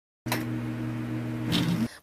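A steady low buzz with hiss, starting about a quarter second in and cutting off just before the speech begins.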